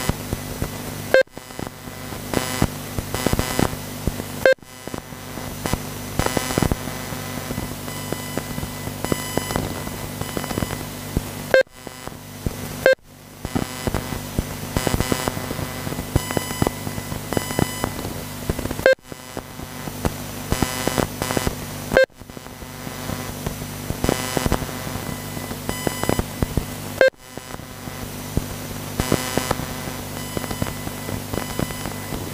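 Electric 4WD radio-controlled buggies racing round the track, a steady whine of their motors. A short beep now and then, about seven times, from the lap-timing system as cars cross the line.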